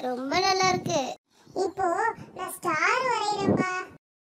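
A child's high-pitched voice singing in short phrases, with a brief pause a little after the first second; the singing cuts off abruptly at the end.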